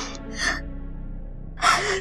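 A woman crying, with short gasping sobs about half a second in and a stronger one near the end, over a soft, sustained background music score.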